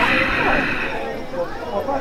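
Indistinct voices of people talking nearby, not close to the microphone, with a brief hissing noise in the first second.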